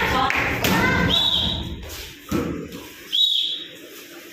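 Kicks landing on a handheld taekwondo kick pad: two sudden thuds in the second half, the second coming with a short high-pitched squeak. Voices are heard in the first second.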